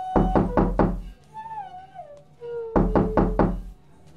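Background film score: two clusters of deep drum strikes, one in the first second and one near the end, with a gliding wind-instrument melody between them.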